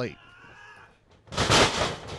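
A wrestler's body slammed onto the wrestling ring in a body slam: one loud crash about one and a half seconds in, with a short ring-out after it.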